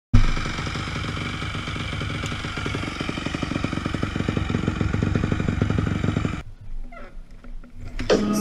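Dirt bike engine running at idle, a fast, even putter, which stops abruptly about six and a half seconds in, leaving only faint sounds.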